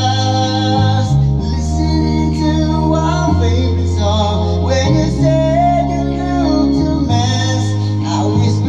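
A man singing karaoke into a handheld microphone over a backing track, the bass notes changing every second or two under the sung melody.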